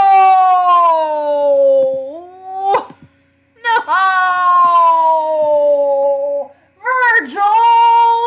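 A man's loud, drawn-out wails of dismay: three long cries, each sliding down in pitch, with short breaks between them.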